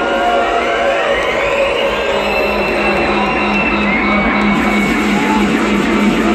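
Live dub reggae band playing at full volume with electric guitar and a steady pulsing bass line, amid a large festival crowd. A slowly rising tone sweeps upward over the first couple of seconds.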